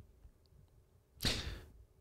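Near silence, then a short breath drawn in close to the microphone a little over a second in, fading away.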